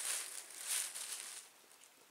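Thin plastic bag rustling and crinkling as a hand rummages inside it, dying away about a second and a half in.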